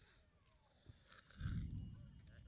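Wind buffeting the microphone: a sudden low rumble about a second and a half in that fades over about half a second and then lingers more quietly.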